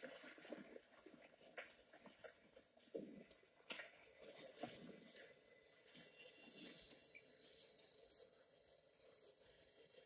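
Near silence: quiet film audio from a tablet's speaker, with faint scattered ticks and clicks.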